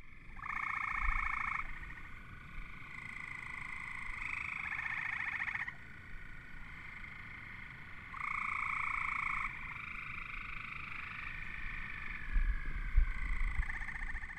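A chorus of frogs calling: several long, rapidly pulsed trills at different pitches that start, stop and overlap, each lasting one to a few seconds. A low rumble rises near the end.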